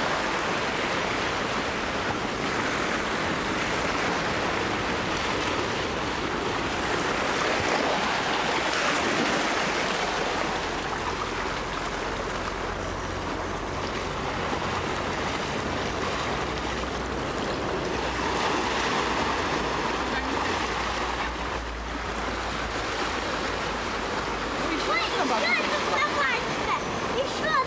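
Gentle surf washing onto a sandy beach, a steady, continuous wash of water. A low rumble runs under it through the middle stretch.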